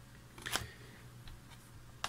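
Postcards being handled on a table: one brief click about half a second in, with a few faint ticks after it, in a quiet room.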